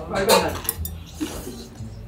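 Metal chopsticks clinking a few times against brass bowls while noodles are eaten, with a short vocal sound from the eater near the start.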